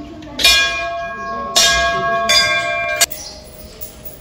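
Hanging temple bell struck three times in quick succession, each strike ringing on into the next. The ringing stops abruptly about three seconds in.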